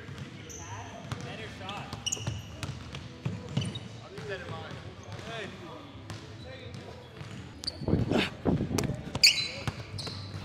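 Basketball game on an indoor hardwood court: sneakers squeaking in short high chirps and a ball bouncing, with players' voices throughout and loud shouting near the end.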